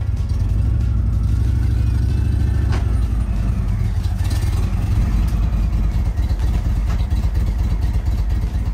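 Touring motorcycle engine running at low revs as the bike is ridden up a ramp and into a wheel chock, a steady low rumble.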